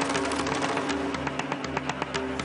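Dramatic background score: a fast, even run of ticking percussion over a low held note.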